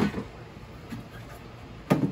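Hard plastic handling knocks: the yellow plastic cover of a resin wash-and-cure station is lifted off with a short knock at the start, then set down with a sharp clack near the end.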